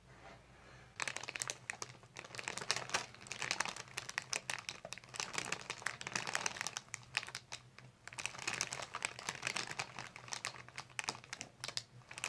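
Paper headrest cover crinkling and rustling under the patient's head as the chiropractor's hands cradle and shift it, a dense irregular crackle that starts about a second in.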